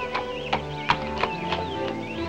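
A horse's hooves clip-clop at a walk, about three beats a second, and stop near the end. Film score music plays under them.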